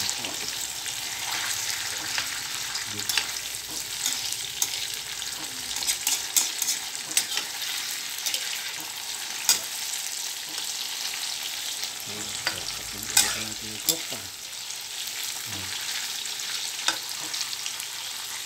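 Cubes of tofu frying in hot oil in a pan: a steady sizzle with scattered sharp clicks, a cluster about six to seven seconds in and the loudest about thirteen seconds in.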